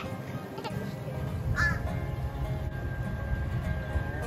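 A crow gives a short caw about one and a half seconds in, over steady background music.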